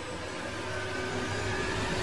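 Sound-design swell from an animated outro sting: a steady, noisy rush with a low rumble underneath, slowly growing louder.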